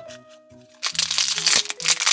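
Crinkly plastic toy wrapper being crumpled in the hands, starting about a second in, over light background music.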